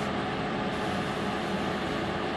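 Steady hum and hiss of a running fan, even throughout with no sudden sounds.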